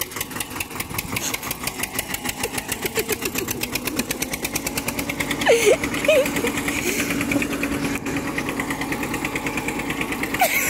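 Diesel farm tractor engine running with a fast, even beat as it pulls a trolley heavily loaded with sugarcane over soft ground.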